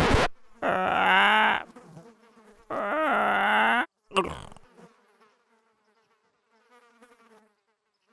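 Cartoon sound effect of flies buzzing: two wavering buzzes of about a second each, then a short buzz and faint buzzing that dies away.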